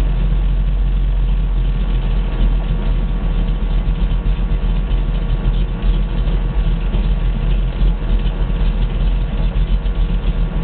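A Ford 351 Cleveland V8 in a 1971 Mustang Mach 1 idling steadily, heard from the driver's seat, with a deep, even engine note.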